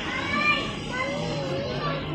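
Indistinct children's voices chattering and calling out, several at once, with no clear words.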